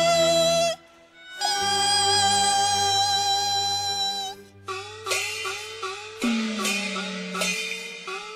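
Cantonese opera music: a long held note ends about a second in, and after a brief break a second steady note is held for about three seconds. From about halfway the accompaniment switches to a run of short plucked or struck notes, two or three a second, with one heavier struck accent near the end.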